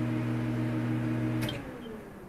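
Film-projector sound effect at the end of a reel: a steady low hum over hiss that cuts off with a click about one and a half seconds in, leaving a fading hiss.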